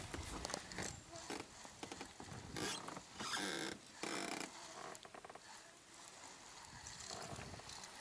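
Spinning reel being cranked to bring in a hooked fish: faint, rapid mechanical clicking from the reel, with a few short, louder bursts of noise in the middle.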